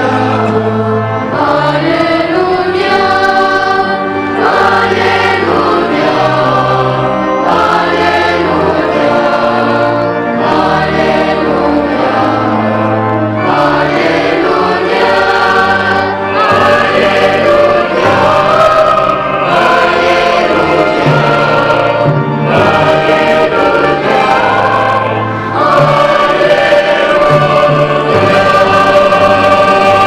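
Church choir singing a sacred song at Mass, with accompaniment that holds long low bass notes beneath the voices, changing every second or two.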